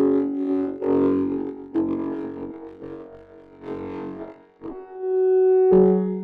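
Synthesizer tones played from a Launchpad X grid controller in a microtonal tuning: a slow run of held notes and chords, a new note or chord starting about every second, ending on a fuller, louder chord.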